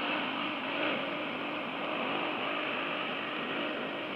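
Steady hiss and static from a shortwave receiver (Icom IC-756 Pro II) tuned to a broadcast station's signal during a pause with no programme on it, with a faint steady whistle running through the noise.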